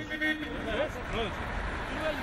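Street traffic: a motor vehicle's engine rumbling, swelling louder in the second half. Voices of people talking are heard faintly over it.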